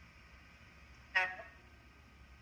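Faint room tone, broken about a second in by one short pitched toot that fades within a fraction of a second.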